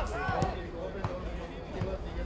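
Football players shouting to each other on a grass pitch, with a few dull thuds of the ball being kicked, over a steady low outdoor rumble.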